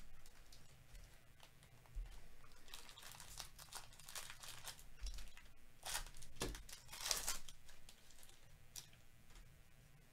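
Wrapper of a 2023 Topps Series 1 baseball card pack crinkling and tearing as it is ripped open by hand, in a run of crackles that is loudest about six to seven seconds in.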